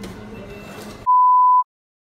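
Low background hubbub for about a second, then a single loud, steady electronic beep lasting about half a second, which cuts off into dead silence.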